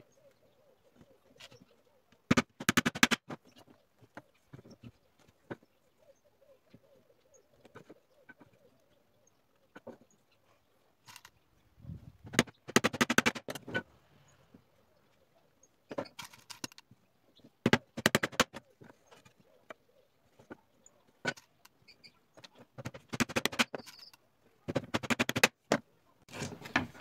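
Pallet-wood slats knocking and clattering against each other and the work surface as they are handled and laid out, in about half a dozen short bursts with quiet stretches between.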